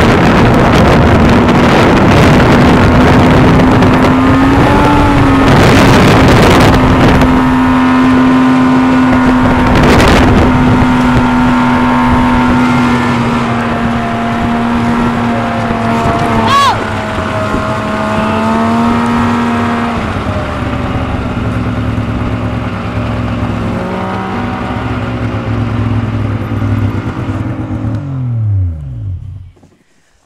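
Snowmobile engine running at a steady high speed with wind noise on the microphone, easing off about two-thirds of the way through; near the end the engine note falls away and it stops.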